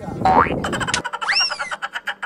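Cartoon-style comedy sound effect: a quick rising squeak, then a springy tone that swoops up and falls back down about a second and a half in.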